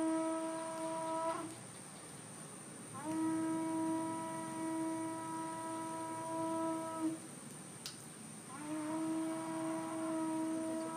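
A horn blown in long, steady held notes, each starting with a slight upward slide. One note ends about a second and a half in, a second runs from about three to seven seconds, and a third starts near the end.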